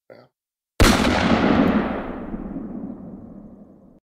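A single sudden boom, a sound effect marking a scene transition, about a second in, dying away in a long echoing tail over about three seconds.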